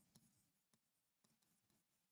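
Near silence, with very faint, irregular taps and clicks of a stylus writing on a touchscreen board.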